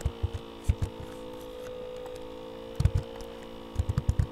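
Steady electrical hum, broken by a few short clicks and knocks from typing on a computer keyboard. The loudest knocks come a little under three seconds in and again near the end.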